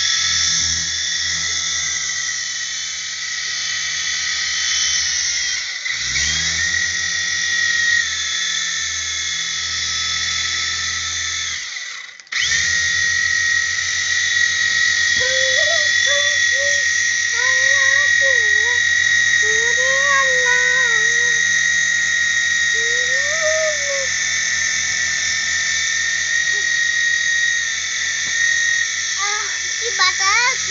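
Small electric motor and spinning rotor of a toy RC helicopter running, a steady high whine over a low fluttering beat of the blades. The motor slows around six seconds in, then cuts out briefly about twelve seconds in and spins straight back up.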